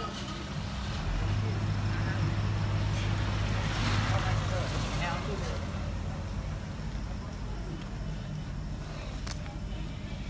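A motor vehicle drives up and passes close by, its engine hum and road noise loudest about four seconds in and then fading, with voices in the background.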